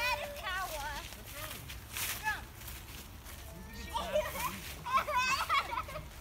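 Children's high-pitched voices calling out in wordless, wavering tones, once at the start and again about four seconds in. A few brief rustles, like footsteps in dry fallen leaves, in between.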